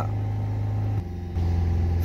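Maruti Suzuki Ertiga's four-cylinder diesel engine running steadily at about 3,000 rpm with the car standing still and the air conditioning on, heard from inside the cabin. About a second in the note dips briefly, then settles lower and a little louder.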